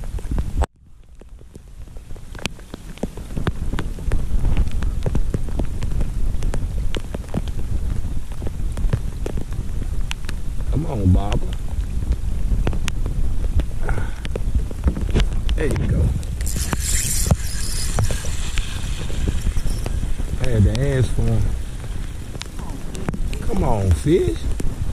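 Rain falling on the creek and on the kayak and camera: many small drop ticks over a low rumble. The sound drops out briefly about a second in and fades back up over the next few seconds, and a burst of high hiss comes in for a few seconds in the second half.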